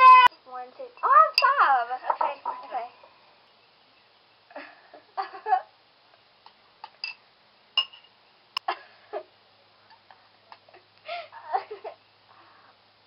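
Girls laughing, then a quieter stretch of brief vocal sounds and scattered light clicks, with another short burst of voices near the end.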